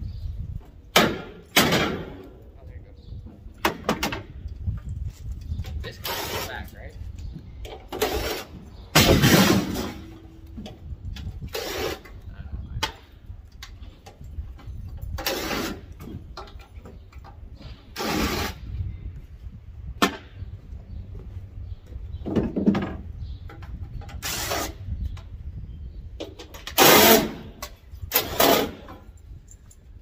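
Intermittent clanks, scrapes and short bursts of tool noise from dismantling the sheet-metal cabinet of a central air conditioner condenser unit, over a steady low rumble.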